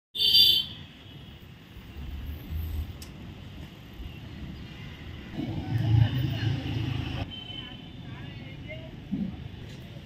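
Ambient field sound of people's voices with a vehicle engine, opening with a short loud burst and louder for a couple of seconds past the middle, where it ends suddenly.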